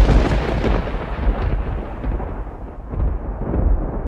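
A loud, deep rumbling sound effect that starts and stops abruptly, easing off a little in the middle and swelling again near the end.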